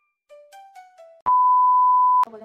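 A few short, quickly fading music notes, then about a second in a loud, steady, high beep cuts in suddenly: the test-pattern tone that goes with TV colour bars, used as an editing sound effect.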